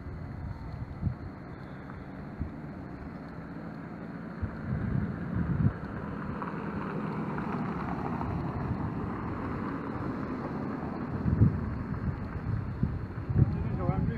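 Wind buffeting the microphone in gusts, with a car driving past on the road in the middle of the stretch.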